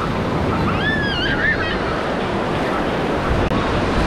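Small waves breaking and washing over the shallows, a steady surf noise with wind buffeting the microphone. A brief high-pitched cry rises and falls about a second in.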